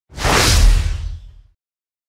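Intro sound effect: a whoosh with a deep boom beneath it, swelling up quickly and fading away by about a second and a half in.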